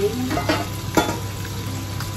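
Pork and green beans frying in a pan, with a steady sizzle. A metal pot lid knocks twice as it is set down, about half a second and a second in.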